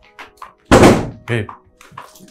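A single loud thunk of a door being shut, about a second in, with lighter knocks around it, over faint background music.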